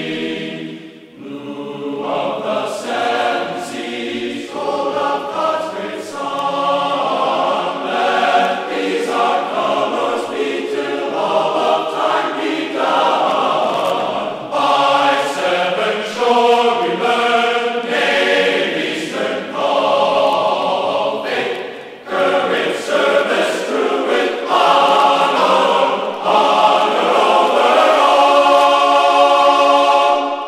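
A choir singing with musical accompaniment, phrase after phrase, with brief pauses about a second in and near 22 seconds.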